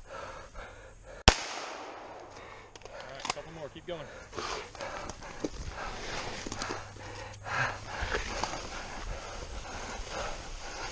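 A single gunshot about a second in, loud and sharp. It is followed by quieter rustling movement and breathing.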